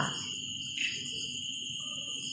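Insects chirring in the background: a steady, continuous high-pitched buzz with no breaks.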